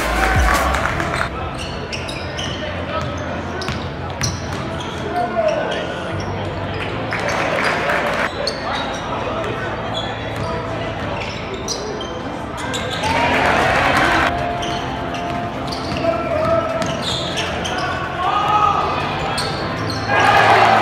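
Live basketball game sound in a gym: a ball bouncing on the hardwood court, short sneaker squeaks and a steady hum of crowd voices. The crowd noise swells louder about 13 seconds in.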